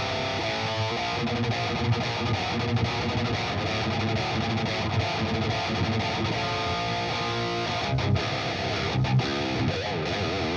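High-gain distorted electric guitar, a six-string in drop C tuning, played through the Fortin Nameless Suite amp-simulator plugin. It plays continuous heavy riffs with strong low notes, with a few abrupt short stops near the end.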